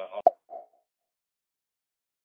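A prank phone call hung up: one sharp click about a quarter second in and a short faint blip just after, then the line goes dead silent.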